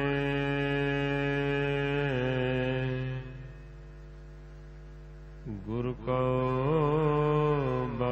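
Sung Gurbani chant: a voice holds long, drawn-out notes over a steady drone. It fades quieter for about two seconds in the middle, then comes back with a wavering held note.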